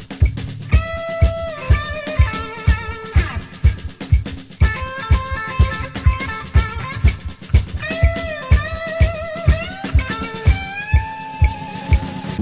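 Rock band recording: an electric guitar plays a lead line of sustained, bent notes, one held with vibrato about halfway through, over a steady drum beat and bass.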